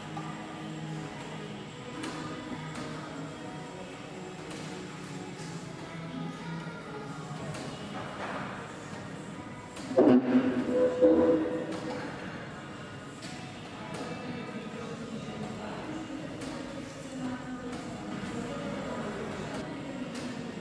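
Radio music playing in the background, with voices under it; a short louder burst about halfway through.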